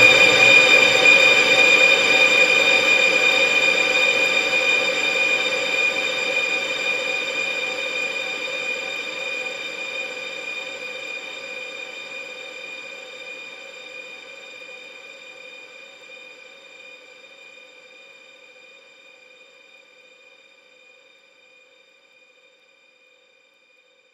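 A sustained, high-pitched electronic chord closing a Brazilian funk montage track, held without change and fading slowly to silence about twenty seconds in.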